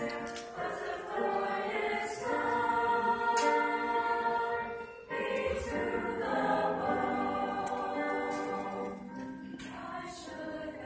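A mixed choir of young men and women singing held chords together, with a short break about halfway through before the voices come back in.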